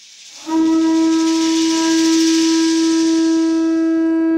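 Conch shell trumpet blown in one long, steady note that starts about half a second in, over a high airy hiss.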